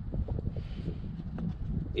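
Wind buffeting the microphone outdoors, an uneven low rumble, with a few faint clicks.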